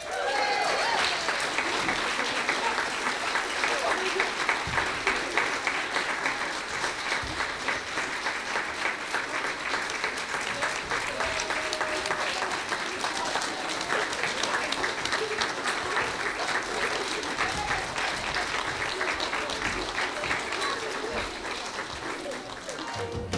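Congregation applauding, many hands clapping at a steady level, with a few voices calling out over the clapping.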